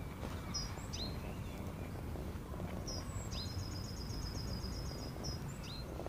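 A small songbird singing over a steady low outdoor rumble: a few short high chirps about half a second in, then a rapid high trill of evenly repeated notes lasting about two seconds from around three seconds in, ending with a short down-slurred note.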